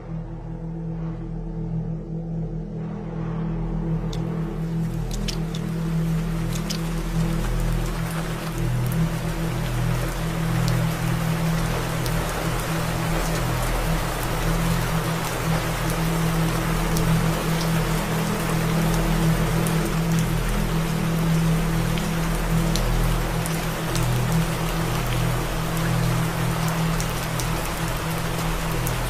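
Steady rain falling, fading in over the first few seconds, over low sustained background music.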